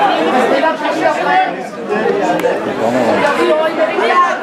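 Crowd chatter: many spectators' voices talking over one another at once, a continuous hubbub with no single voice standing out.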